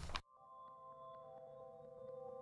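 Speech cuts off abruptly just after the start, and a faint outro music chord of several steady held synth tones begins. It slowly grows louder, with a few faint ticks.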